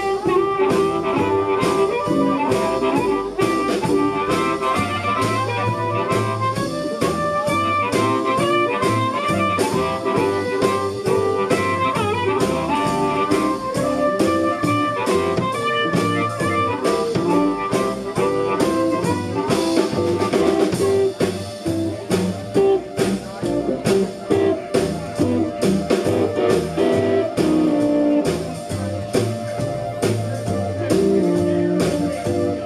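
Live blues band playing an instrumental break: amplified harmonica leading over upright bass, drum kit and electric guitar. The playing turns choppier about two-thirds of the way through.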